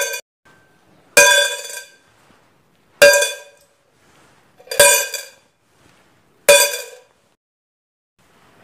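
Coins dropped one at a time into a stainless steel can, each landing with a sharp metallic clink that rings on briefly: four drops, evenly spaced about every second and three-quarters.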